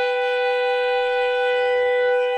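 Flute and clarinet duo holding one long, steady note together. It is the closing note of the piece.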